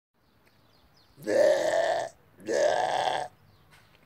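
A person's voice making two drawn-out, wordless vocal noises, each a little under a second long, the second starting about half a second after the first ends.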